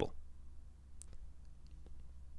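Quiet pause with a steady low hum and a few faint clicks, the clearest about a second in.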